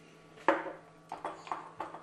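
A small glass spice jar set down on the countertop with one sharp, ringing clink, followed by a few lighter clicks and knocks of spice containers being handled.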